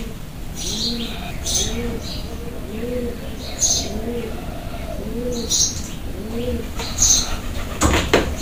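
A pigeon cooing over and over, about one low rising-and-falling coo a second, with short high bird chirps in between. A sharp knock comes near the end.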